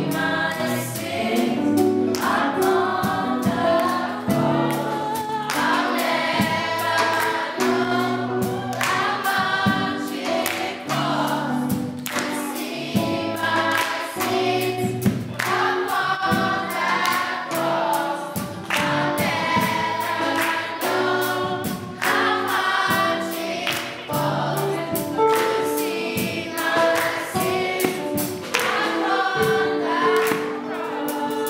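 Children's choir singing a gospel song into handheld microphones, backed by a live band with drums and bass notes, with hand claps.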